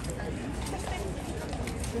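People talking outdoors: faint, overlapping voices over a steady low background rumble, with a couple of small clicks.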